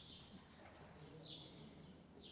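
Near silence: quiet room tone with a few faint bird chirps, one right at the start and another a little past the middle.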